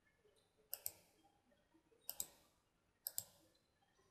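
Computer mouse button clicking: three pairs of quick, sharp clicks about a second apart, against near silence.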